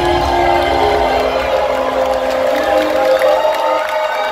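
Live electronic dance music played loud over a club sound system, with sustained synth chords over a heavy bass that thins out near the end, and a crowd cheering over it.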